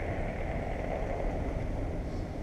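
Wind buffeting a small action-camera microphone: a steady, irregular low rumble.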